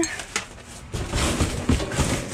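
Plastic bags rustling and cardboard boxes being shifted by hand among dumpster trash, with a string of short knocks and crinkles from about a second in.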